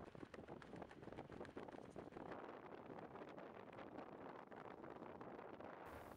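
Near silence: a faint, irregular crackle of small clicks under a low hiss.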